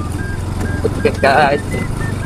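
Motor scooter running, a low steady rumble throughout, with a brief burst of a man's voice just past the middle. Faint short high beeps at changing pitches form a little melody over it.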